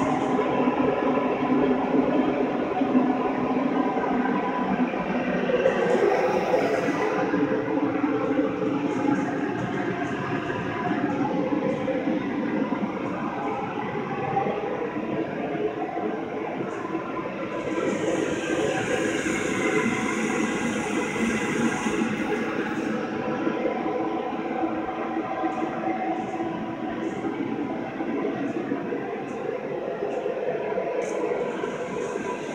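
A steady mechanical drone with a faint hum running through it; a higher hiss rises briefly about six seconds in and again for a few seconds around the middle.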